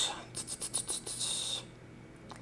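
Faint scratching and rubbing with a few light clicks, lasting about a second and a half, then stopping.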